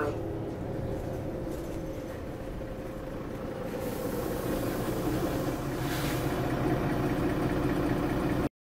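Cabin noise inside a Mercedes-Benz Citaro single-deck bus on the move: the diesel engine and road noise drone steadily, growing a little louder in the second half.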